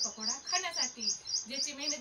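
A woman talking, with a rapid, even run of short high-pitched chirps, about six a second, sounding behind her voice throughout.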